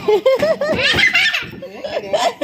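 People laughing heartily: a quick run of short, high laughs for about the first second and a half, then softer.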